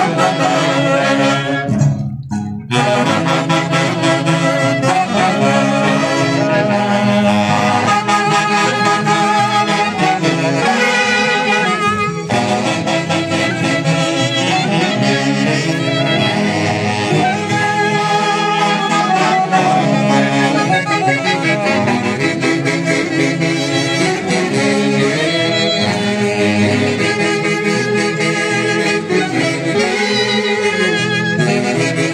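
Folk orchestra playing a dance tune, saxophones in the lead with brass and a harp, with a brief dip about two seconds in.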